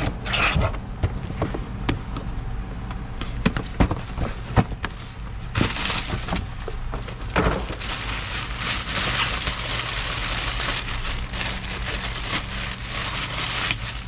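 A cardboard parts box handled and opened, with scattered knocks and scrapes, then from about five seconds in the loud, continuous crinkling of a plastic bag as a replacement window regulator is pulled out of it.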